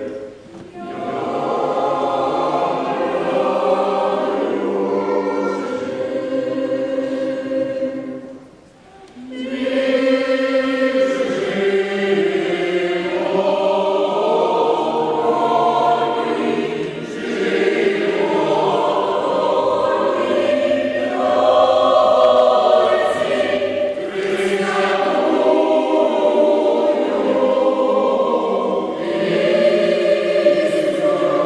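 Mixed choir of men's and women's voices singing a Ukrainian choral song under a conductor, with a brief drop right at the start and a pause of about a second some eight seconds in before the voices come back in.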